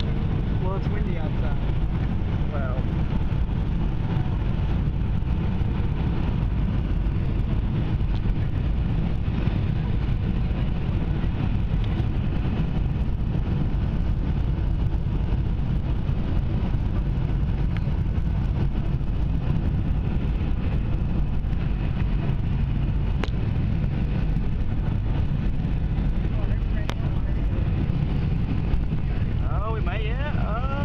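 Steady cabin noise inside a Boeing 757 airliner in flight on approach: engine and airflow rumble, heaviest in the low end, holding an even level throughout.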